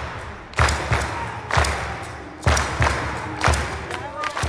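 Dance music carried by heavy drum beats, about one a second with some falling in quick pairs, over a steady background of crowd noise.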